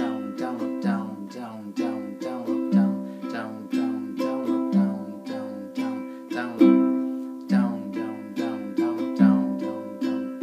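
Ukulele with a low G string being strummed in a steady rhythm of feathered down-strums, several strums a second, with a louder accented strum about once a second.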